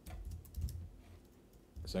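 A few computer keyboard clicks in the first second, the keystrokes of copying text and pasting it into a web form, over a low dull rumble. A man starts speaking at the very end.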